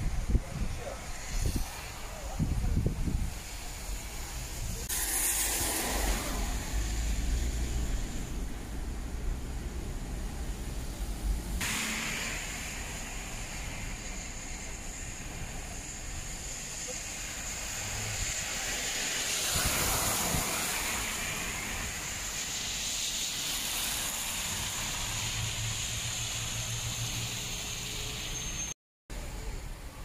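Traffic and road noise heard from a car driving on a wet city street: a steady hiss of tyres, with louder swells as vehicles pass, about five, twenty and twenty-four seconds in.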